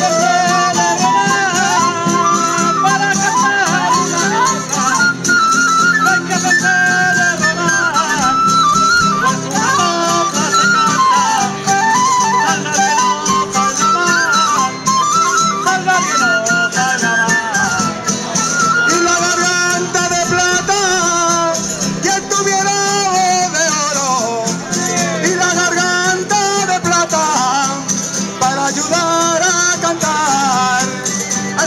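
Spanish folk cuadrilla playing live: strummed guitars and lutes under a high, winding melody line, with a rattling percussion beat, running without a break.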